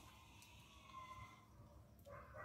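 Near silence: faint outdoor background, with one faint short tone about a second in.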